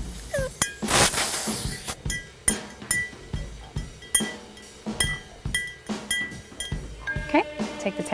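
A short hiss of CO2 venting as the fill line from a CO2 tank is bled, lasting about a second near the start. After it comes background music with a steady beat of ringing, chiming strikes about twice a second.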